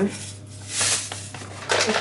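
Granulated sugar trickling from a paper bag into a non-stick frying pan, with a short, high hiss of grains and paper rustle about a second in as the pour ends and the bag is lifted away.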